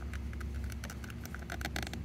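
Electric starter cranking a Champion 3500 W inverter generator's engine: a steady low hum with fast, faint ticking while the start button is held.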